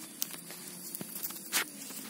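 Faint rustling and crackling of dry cardamom fruit clusters and pine-needle litter handled by hand, with a few small clicks and a sharper rustle about one and a half seconds in.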